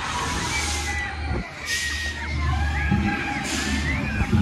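Busy funfair crowd ambience: crowd voices and shouts over a low, steady drone of ride machinery, with a brief drop about a second and a half in.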